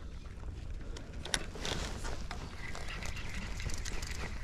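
Wind rumbling on the microphone, with a few light clicks from handling the spinning rod and reel about a second in, and a faint steady high whine coming in past the halfway mark.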